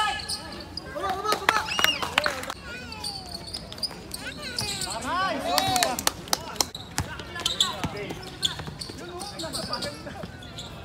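Basketball bouncing on a hard outdoor court during a game, irregular sharp knocks scattered throughout, with players' voices calling out over them.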